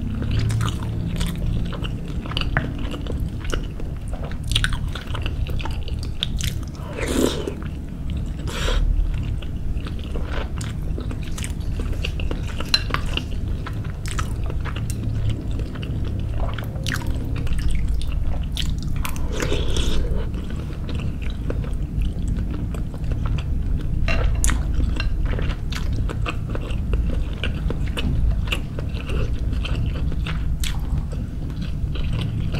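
Close-miked mouth sounds of a person biting and chewing soft suki-style fish balls and fish cakes, with many small clicks throughout.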